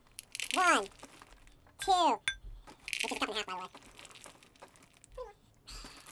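Reese's Puffs cereal poured from its box into a small plastic measuring cup, in a few short rattling pours, with brief bits of a man's voice in between.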